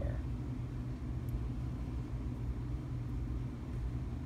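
Steady low hum of room background noise, with a faint tick about a second in.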